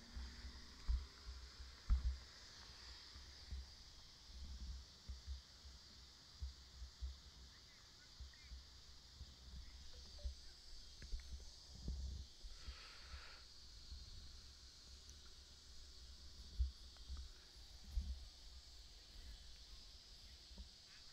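Faint, steady high-pitched chorus of insects chirping in the evening, with irregular low thuds underneath.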